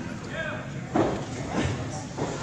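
Thuds on a wrestling ring's canvas, the louder about a second in and a second one shortly after, with a short shout from the crowd early on. The hall's echo is audible.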